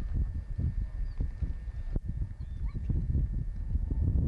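Wind buffeting the camcorder microphone: a low, irregular rumble with a sharp knock about two seconds in and a few faint high chirps.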